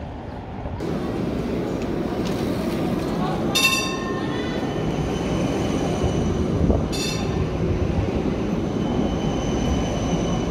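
A city tram running past close by on street rails, a steady rumble with a faint high squeal held from the wheels. Two short ringing sounds come about three seconds apart.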